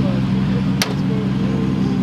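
Nissan Skyline's engine idling steadily, with one sharp click a little under halfway through.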